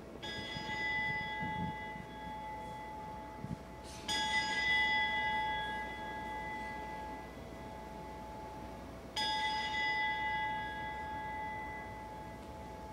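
Altar bell struck three times, about four to five seconds apart, each strike ringing on and slowly fading. It marks the elevation of the consecrated host at Mass.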